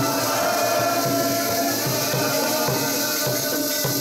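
Sikh kirtan: devotional music with long held notes over a steady rhythmic beat.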